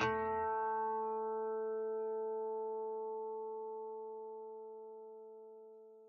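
Music: a single instrument note struck once as a song ends and left to ring, fading away steadily to silence over about six seconds.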